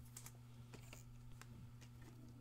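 Faint light clicks and plastic rustles of trading cards and a clear plastic card sleeve being handled, a handful of small separate ticks over a low steady hum.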